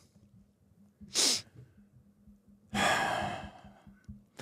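Breathing close to a microphone: a short, sharp exhale about a second in, then a longer sigh near three seconds that fades out.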